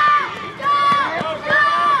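Raised voices calling out across a ball field: three drawn-out, high-pitched shouts.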